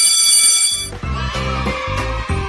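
Electric school bell sound effect giving a steady ring that stops about a second in. Music with a heavy bass beat then comes in.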